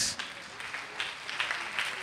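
Congregation applauding, a quiet, even patter of many hands clapping.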